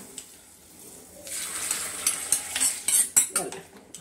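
Hot tempering poured from an iron kadai into a steel pot of curry, sizzling from about a second in. A spatula stirs and clinks against the pot several times.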